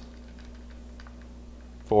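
Faint, scattered light clicks and taps of hands handling a plastic siren housing and its wires, over a steady low hum.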